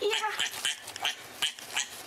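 Piglet squealing in short, repeated calls, about three a second, the first one longer and lower-pitched.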